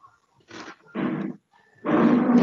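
A woman's voice saying a few slow, drawn-out words: two short bursts, then a louder, longer one near the end.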